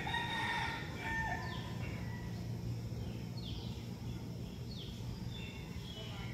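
A rooster crowing in the first second and a half, followed by a few shorter, falling bird calls, over a steady low hum.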